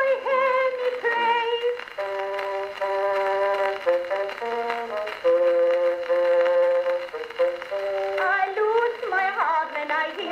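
An early acoustic recording played back from a two-minute phonograph cylinder on an Edison phonograph. A woman's sung line trails off, then comes a passage of held, sustained instrumental notes stepping between pitches, and singing starts again near the end.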